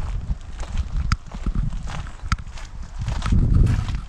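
Wind rumbling on the microphone, heavier near the end, with footsteps and two sharp clicks about a second apart.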